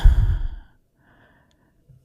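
A man's heavy exhale straight into a close microphone, with a deep rumble of breath on the mic, lasting about half a second. A faint breath follows about a second in.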